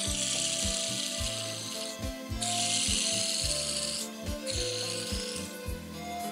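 Dry hissing rubs in three bursts, the first about two seconds long, as a dubbing loop of black fibre is twisted into a rope. Soft background music runs underneath.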